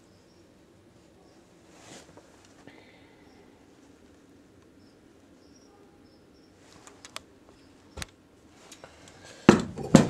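Quiet room tone, with a few faint clicks about seven seconds in, a sharp single knock about a second later, and a louder thump near the end.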